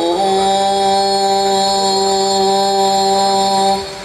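Qasidah devotional music over a loudspeaker system: a single note held steady for about three and a half seconds, breaking off shortly before the end.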